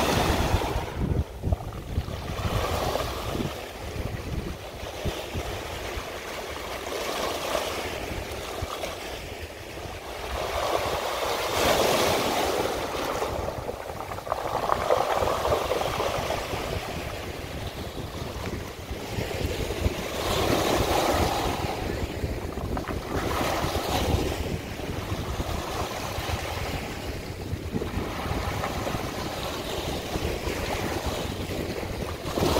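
Small waves washing up a cobble beach and drawing back, surging every few seconds, with the rounded stones rolling and rattling in the wash.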